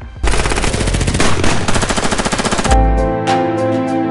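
Rapid automatic machine-gun fire sound effect, one dense burst of very fast shots lasting about two and a half seconds that stops abruptly. Music with deep bass hits follows near the end.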